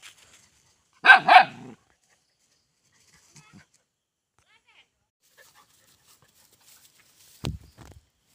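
A dog barking: a quick run of two or three barks about a second in. A single thump near the end.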